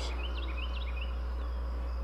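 A small bird chirping a handful of short, quick rising notes over a steady low hum.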